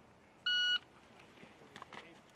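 Electronic shot timer giving one short beep, about a third of a second long, a little under half a second in: the start signal telling the shooter to begin firing.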